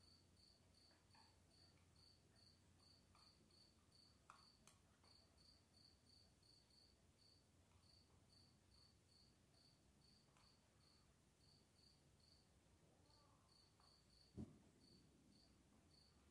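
Near silence with a faint cricket chirping steadily, about three short high chirps a second. A single soft thump sounds near the end.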